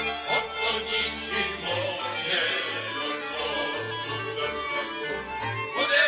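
Moravian folk music from a cimbalom band, with fiddles carrying the tune over a moving bass line.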